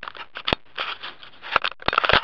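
Handling noise from a handheld camera being swung around: irregular sharp clicks and knocks with short bursts of rubbing and rustling on the microphone.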